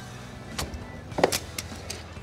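Several light metallic clicks and clacks from an aluminium folding fridge stand being reset by hand to its lower height setting, the loudest a short ringing clank a little past the middle. Background music underneath.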